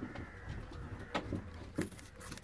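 German giant rabbit biting and crunching a piece of raw apple: three sharp crunches, at the start, just past a second in, and near the end.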